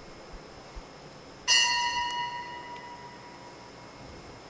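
Altar bell struck once about a second and a half in, marking the priest's communion. It rings with several clear tones that fade away over about a second and a half.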